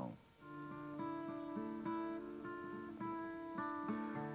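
Acoustic guitar played solo, starting about half a second in: picked chords whose notes ring on, changing roughly every half second.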